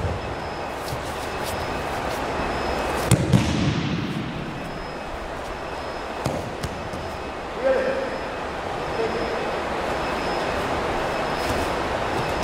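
An aikido partner thrown and landing a breakfall on a padded mat: a thud and slap about three seconds in, then a few lighter thumps of feet on the mat, over a steady background hiss.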